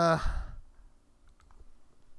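A few faint computer mouse clicks, close together, following a short spoken 'uh'.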